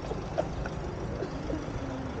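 Low, steady rumble of vehicle engines and traffic, with faint indistinct voices.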